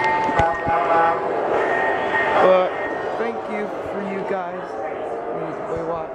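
Model train running around a layout, with a steady tone held over the first two and a half seconds and a couple of knocks early on, under the chatter of people's voices around it.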